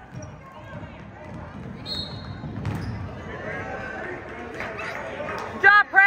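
Basketball dribbled and bouncing on a gym's hardwood floor amid the hubbub of a youth game, with a brief high squeak about two seconds in. Near the end a spectator gives a loud shout.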